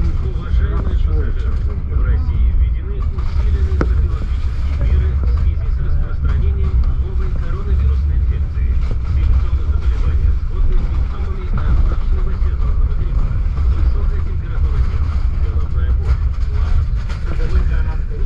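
Passenger train coach running at speed, heard from inside the carriage: a steady, deep rumble of wheels on the rails, with a single knock about four seconds in.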